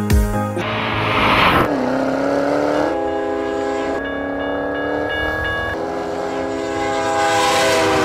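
Train whistle sounding one long chord that shifts in pitch a few times, after a burst of hiss about a second in. A beat of music ends at the very start.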